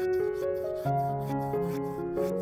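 Bristles of a large flat brush stroking acrylic paint onto canvas, about four strokes a second, heard under background music of held keyboard-like notes.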